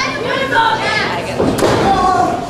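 Crowd voices calling out at ringside, with one sharp thud about one and a half seconds in, typical of a wrestler's body hitting the ring mat.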